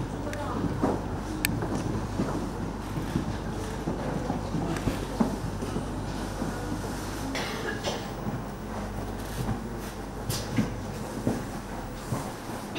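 Indistinct voices of people talking in the background over a steady low hum, with a few faint clicks.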